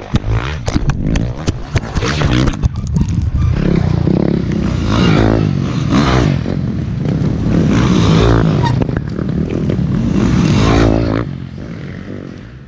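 Clattering and scraping knocks, then a dirt bike engine revving up in several swells before fading out near the end.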